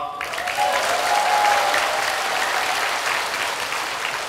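Audience applauding, a dense steady clapping that eases off slightly near the end.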